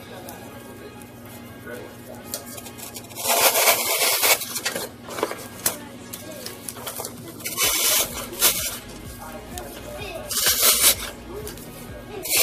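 Artificial flower stems and plastic leaves rustling in several short bursts as they are handled and pushed into floral foam in a tin bucket.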